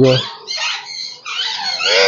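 Nesting Alexandrine parakeet giving harsh, continuous squawks inside its nest box, a defensive protest at a hand reaching in toward its eggs.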